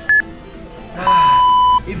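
Workout interval-timer beeps: a short high beep just after the start, then a long, lower beep from about one second in lasting most of a second, signalling the end of the countdown and the switch to the next interval.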